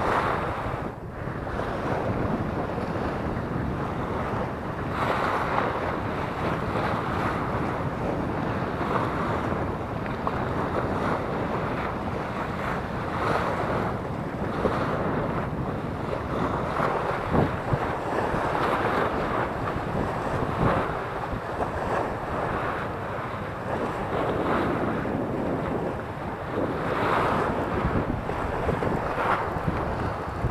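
Waves washing and splashing against the foot of a concrete seawall, with wind buffeting the microphone; the noise swells and ebbs every few seconds.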